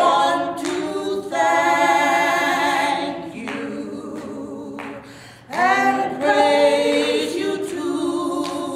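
Two women singing together unaccompanied, holding long notes with vibrato. One phrase fades out about three seconds in, and a new one begins with an upward slide a little past halfway.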